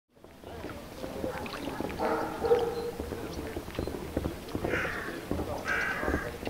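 Footsteps of a group of people walking on wooden boards: many uneven knocks, with a few short calls over them about two seconds in and twice near the end.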